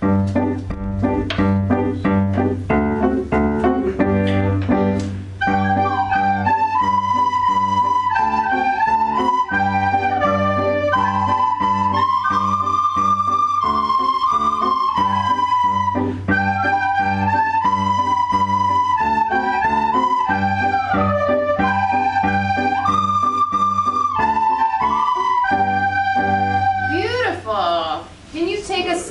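Recorders playing a simple melody of held notes over an accompaniment of steady bass and repeated chords. For the first five seconds only the accompaniment's chords and beat are heard; then the recorder melody comes in.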